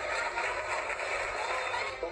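A crowd applauding: steady, dense clapping.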